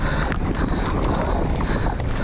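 Wind rushing over the camera microphone of a mountain bike descending a dirt trail at speed, over a rumble of tyres on dirt and a few scattered rattles and clicks.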